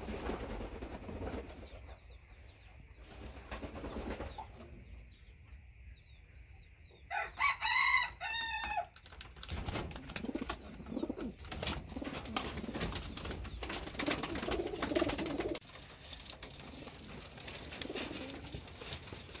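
Homing pigeons cooing and clattering their wings. About seven seconds in, a loud, drawn-out call of another bird lasts about two seconds.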